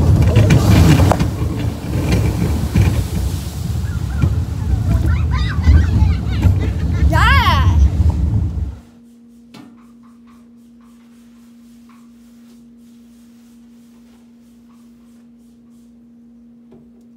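Log flume boat just after its big drop: loud rushing noise on the microphone, with shouts and whoops from the riders. About nine seconds in it cuts off abruptly to a quiet room with a steady low hum.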